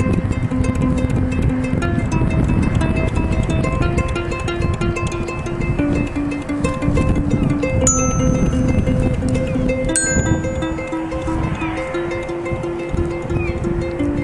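Instrumental break of a live song: a ukulele strumming steadily while a glockenspiel is struck with a mallet, its notes ringing over the strumming.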